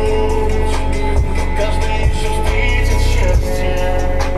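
A pop song with heavy bass playing loud through a Noema 300ГДН39-4 subwoofer in a bass-reflex box, recorded in the room. The deep bass runs steadily under the melody and swells for a moment past the middle.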